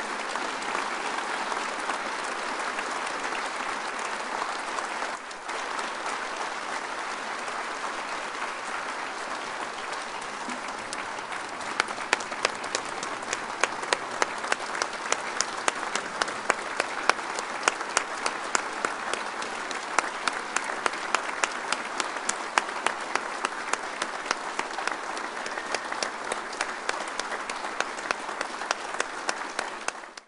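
Large audience applauding steadily. From about twelve seconds in, loud single claps stand out from the crowd at a quick, even pace.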